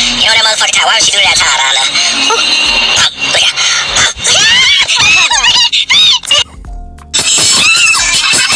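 A man's voice talking and laughing in high, excited squeals over music, which briefly drops away about two-thirds of the way through before coming back in.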